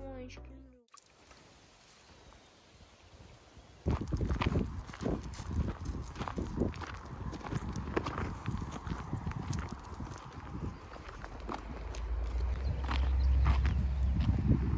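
Music ends within the first second. After a quiet stretch, footsteps on a dirt path with knocks from the handheld phone start about four seconds in, and a low wind rumble on the microphone grows toward the end.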